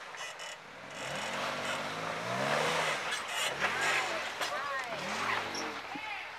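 Jeep Wrangler engine revving up and down in repeated pulls as it crawls over rocks and roots, with tyres grinding over loose rock and dirt as it passes close by.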